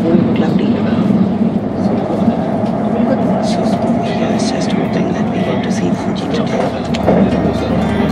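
Steady rumble and rush of a moving train heard from inside the carriage, with another train passing close alongside.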